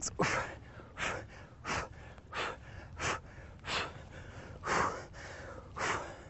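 A man breathing hard from exertion, with short, sharp breaths out at a steady pace of about one every second or a little less, in time with each lunge and twist.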